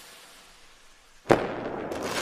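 Intro sound effect: a fading whoosh-like tail, then, about a second and a quarter in, a sudden loud explosion-like hit followed by a long noisy tail with small crackles.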